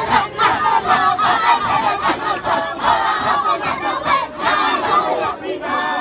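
A large group of men's voices chanting together loudly in a dahira, the Sufi devotional chant, with shouted calls over the massed voices. The chant dips briefly near the end before swelling again.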